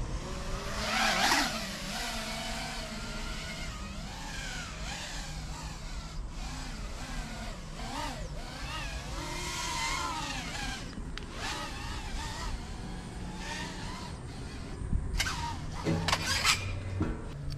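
Three-inch FPV racing quadcopters (one a BetaFPV Twig on 4S) flying, their motors whining. The pitch keeps rising and falling as the throttle changes through the course, loudest about a second in.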